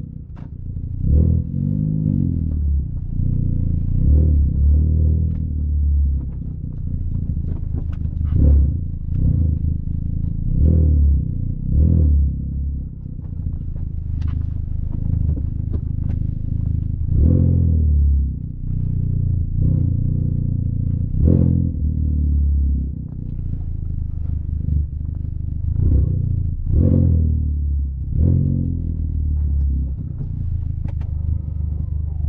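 Honda Civic Type R (FK8) turbocharged 2.0-litre four-cylinder heard from inside the cabin through an HKS catless downpipe and front pipe. It is loud, accelerating in a series of short pulls, each rising in pitch and then falling back.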